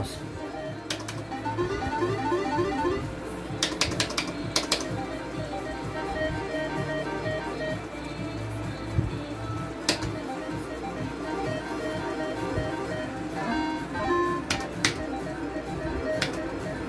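Electronic game music and beeping jingles from a Gold Fish arcade-style slot machine, with sharp plastic clicks of its push buttons being pressed a few times: once about a second in, a cluster around four to five seconds, once near ten seconds and several near the end.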